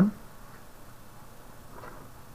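Quiet room tone in a small room, just after a man's voice trails off at the very start.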